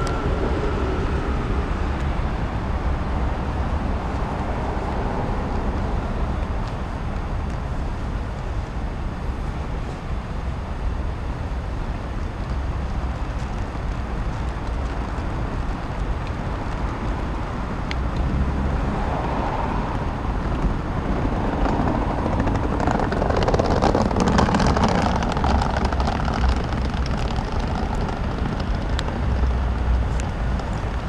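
Steady outdoor city background noise with a heavy low rumble, like distant traffic. About two-thirds of the way through, a louder passing sound swells for a few seconds and fades, like a vehicle or aircraft going by.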